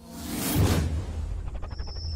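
Logo-reveal sound effects: a whoosh that swells and fades, peaking about half a second in, over a steady low bass rumble. Near the end a quick fluttering shimmer is followed by a thin high ringing tone.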